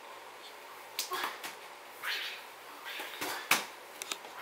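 Scattered light knocks and rustles of hollow plastic play balls being tossed and handled inside a nylon pop-up play tent, starting about a second in, with a sharper knock near the end.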